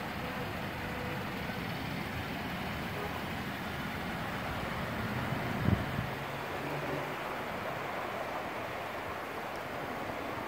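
Steady background noise of road traffic, with a single brief thump a little past halfway through.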